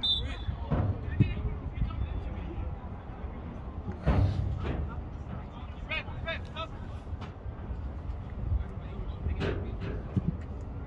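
Scattered shouts and calls from players and people on the sideline of a football pitch, over a steady low rumble of wind on the microphone. A sharp thump about four seconds in is the loudest sound.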